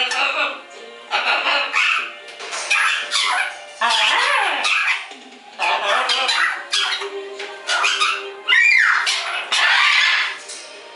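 Green-winged macaw vocalizing in short bursts about once a second, some sliding down in pitch, along with music from a television.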